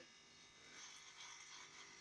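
Faint, steady buzz of an electric beard trimmer running against a beard.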